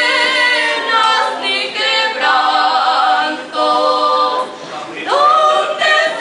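Two women singing a duet without accompaniment, in long phrases of held, wavering notes. A short dip comes just before five seconds in, and then a new phrase starts.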